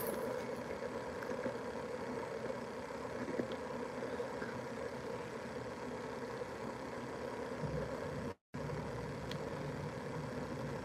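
Steady indoor room hum from the building's air handling, broken by a brief total dropout of the sound about eight and a half seconds in.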